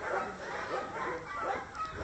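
Two puppies mouthing and chewing a fabric ribbon bow held in a hand: soft, irregular rustling and mouth noises.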